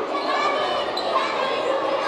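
Many children chattering and calling out at once in a large, echoing hall.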